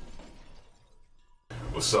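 The tail of a glass-shattering crash, shards settling, fading out over the first second into near silence. About one and a half seconds in, a steady room hum starts abruptly and a man's voice begins.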